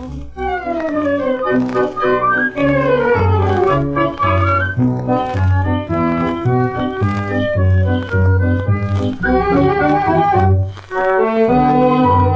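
Instrumental break from a 1960 Korean 78 rpm pop record: the studio orchestra's accompaniment alone, with quick falling melodic runs at the start over a steady, evenly pulsed bass line, and no voice.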